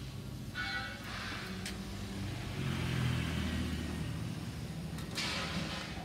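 A motor vehicle engine running nearby, with a low hum that swells to its loudest about halfway through and then eases off. Short hissing noises come near the start and near the end.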